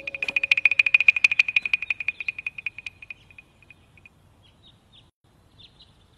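A fast trilling animal call, about a dozen pulses a second on one high pitch, that fades away over about three seconds, followed by a few faint short chirps.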